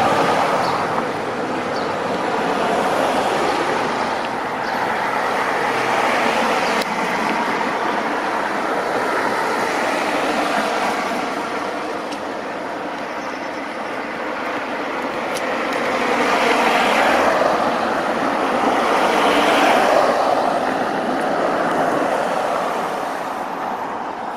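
Road traffic: cars passing on the road, a steady rush that swells and fades several times, loudest in the last third.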